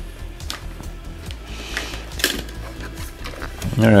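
Background music under a few clicks and a short scrape as a plastic instant camera is handled and turned over. The sharpest click comes a little after two seconds in.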